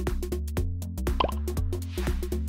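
Upbeat electronic background music with a steady beat and bass line, with a short upward-gliding sound effect about halfway through.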